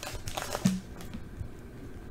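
Brief crinkling of a torn Panini Prizm foil card-pack wrapper and a soft knock in the first second as the cards are drawn out, then faint handling of the cards.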